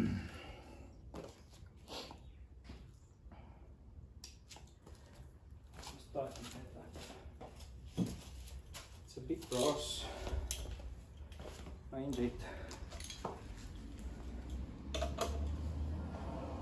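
Scattered metallic clinks and clatter of hand tools being picked up and handled, with a few short muffled voice sounds in between, over a steady low hum.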